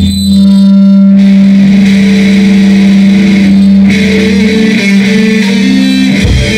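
A live band playing amplified music with electric guitar, built on one long held low note under changing higher notes; the sound grows fuller about four seconds in.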